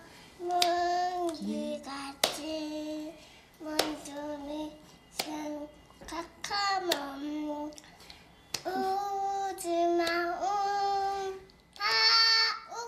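A two-year-old girl singing unaccompanied in a high voice, in short phrases with brief pauses between them. A few sharp clicks fall between the phrases.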